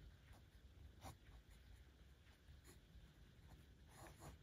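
Faint scratching of a pen writing on a paper planner page, in short separate strokes.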